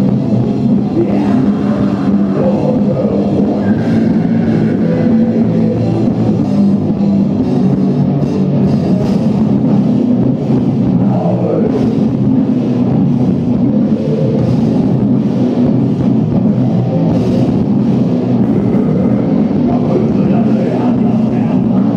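Rock band playing live: electric guitars and a drum kit with cymbals, loud and steady, heard from among the audience.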